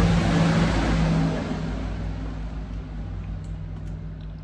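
A motor vehicle passing close by, loudest in the first second and fading away over the rest.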